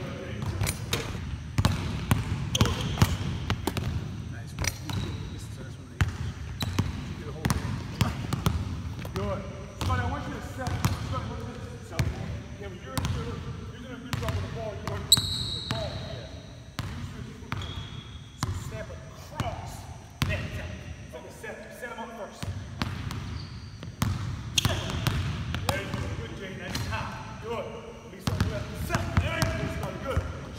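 A basketball dribbled hard on a hardwood gym floor: a steady run of sharp bounces through the whole stretch. About halfway through there is one short high squeak, like a sneaker on the court, and brief talk in between.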